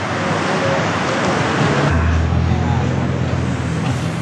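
Steady street traffic noise, with a low steady hum joining about halfway through.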